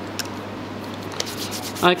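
Steady hiss of hands rubbing and working stiff nylon fishing line, with a couple of faint clicks, and a spoken word near the end.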